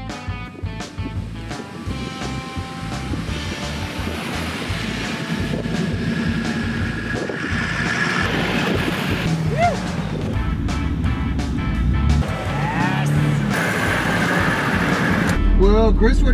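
Background music with a beat over the engine and tyre noise of a four-wheel drive crawling through soft sand, growing steadily louder as it comes closer. Near the end the sound changes to a steady low drone of the vehicle heard from inside the cab.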